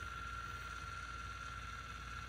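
Faint steady hum with a thin high whine from the YoLink motorized shutoff valve's actuator, its motor still running as it closes the ball valve on the water supply after the leak sensor detected water.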